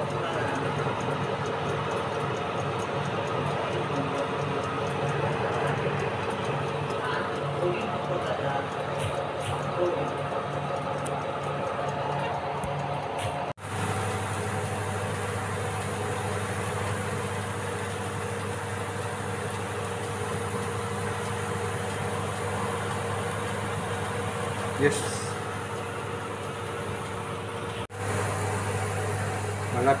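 Fan oven running, its convection fan giving a steady mechanical hum while food bakes inside. The sound drops out for an instant about a third of the way in, and after that a lower hum is stronger; it drops out again shortly before the end.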